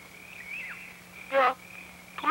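A pause in the dialogue filled by a faint, thin, high steady whine that wavers and dips once, over a low hum. About halfway through, a single short vocal sound breaks in, loud and brief, like one syllable or exclamation.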